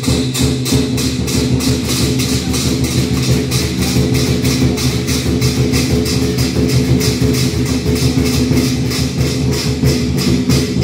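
Lion-dance percussion music: a fast, even beat of drum and cymbal strikes over sustained low tones.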